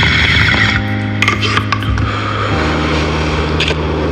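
An instrumental beat playing as background music, with steady bass notes that change pitch about two and a half seconds in.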